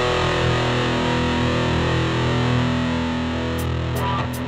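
Distorted electric guitar holding one chord that rings out steadily, fading slightly toward the end.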